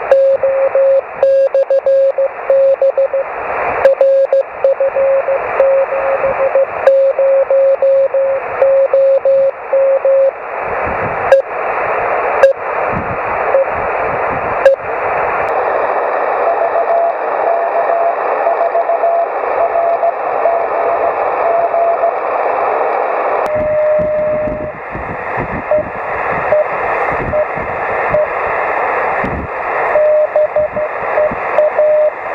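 Shortwave transceiver receiving on 6 metres in USB, its speaker putting out band-limited hiss and a Morse code signal keyed on and off as a single tone. A few sharp crackles come midway as the dial is tuned up the band, where a weaker keyed tone and then a steadier tone are heard.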